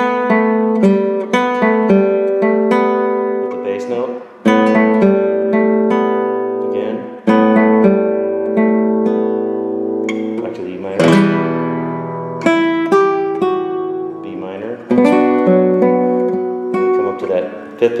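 Nylon-string classical guitar fingerpicked, playing a slow melodic phrase over chords in E minor, with the notes left to ring into one another and a few stronger strokes along the way.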